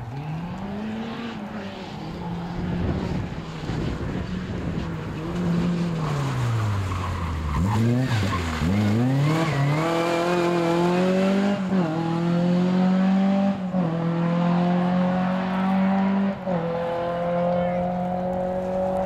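Rally car engine approaching: the revs fall and dip twice about 8 seconds in as it brakes and downshifts for the corner, then it accelerates hard away, with upshifts about 12, 14 and 16 seconds in.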